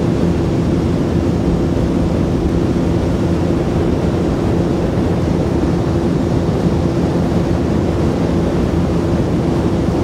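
Steady motorboat engine drone with a constant low hum, mixed with wind rushing over the microphone and water wash.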